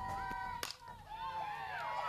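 Softball bat hitting a pitched ball: one sharp crack about two-thirds of a second in.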